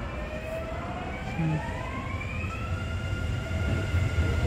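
Kintetsu electric train pulling away from a station platform. Its motors give a whine that rises steadily in pitch as it gathers speed, over a low rumble of the wheels that grows louder.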